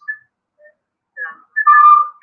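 Short high whistling chirps, then a louder steady whistle tone in the last half second: a weird noise on the live-stream's audio.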